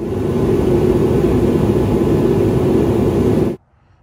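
Loud, steady rushing noise with a low hum in it, like air being moved by a machine, starting suddenly and cutting off about three and a half seconds in.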